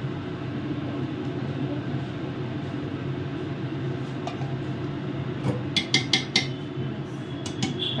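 Metal cookware clinking: a quick run of four or five sharp clinks about two-thirds of the way in and two or three more near the end, over a steady low hum.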